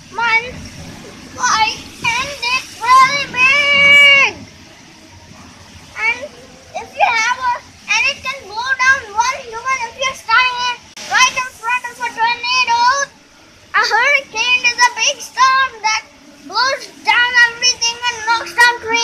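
A child's high-pitched voice talking in quick bursts, with a faint steady hiss of heavy rain beneath it in the pauses.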